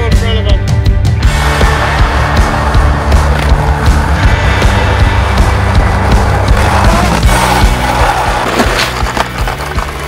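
Skateboard wheels rolling fast down an asphalt road: a steady rushing roar that starts about a second in, with music playing underneath.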